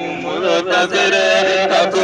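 A man's voice chanting a naat, a devotional verse in praise of the Prophet, into a handheld microphone. He sings in long held melodic lines that glide between notes.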